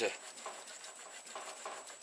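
Faint, irregular scraping and rubbing of hand-tool work on the knife handle's blade slot.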